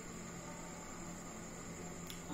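Low steady hiss with a faint electrical hum and a thin, high, steady tone: room tone.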